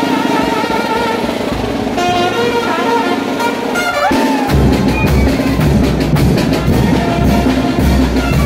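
Mexican brass band (banda de viento) playing a son de chinelo for the brinco del chinelo dance: brass carrying the melody over drums. The bass drum and low brass drop out for the first half, then come back in heavily about four and a half seconds in, just after a sliding note.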